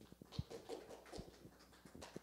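Faint footsteps on a stage: a few irregular thumps and knocks, the loudest about half a second and just over a second in.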